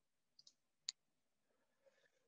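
Near silence, with one faint sharp click just under a second in and a couple of softer ticks shortly before it.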